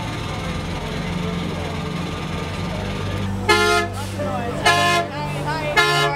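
Bus horn honked three times, short steady blasts about a second apart, over the low hum of an idling bus engine.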